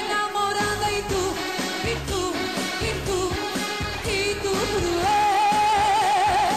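Live pop song: a band with a steady beat and a woman singing over it. Near the end she holds one long wavering note.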